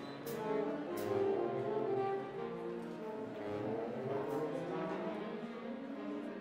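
Big band playing: saxophones and brass sustaining chords over drum kit and upright bass. A few sharp cymbal hits cut through, two in the first second and another past the middle.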